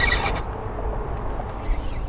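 Strong wind buffeting the microphone, a steady low rumble. In the first half second a dense high whirring plays over it and stops abruptly.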